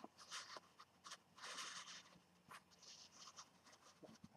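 Faint scraping and rubbing in several short bursts, as a figurine is turned on its base against the surface it stands on.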